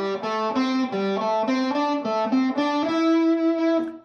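Ernie Ball Music Man electric guitar playing the minor pentatonic scale as an even run of single notes, about four a second: four notes on the fourth and third strings in each of three scale positions, shifting up the neck. The run ends on a note held for about a second.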